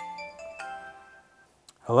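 Phone ringtone: a short melody of clear chiming notes stepping up and down in pitch. It stops about a second and a half in, followed by a small click as the call is answered.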